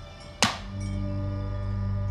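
Background score music of soft held tones, with a single sharp, ringing hit about half a second in, after which low sustained notes come in and hold.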